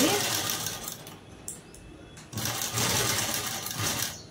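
Sewing machine stitching through fabric in two runs: one for about the first second, a short pause, then running again from a little past two seconds in.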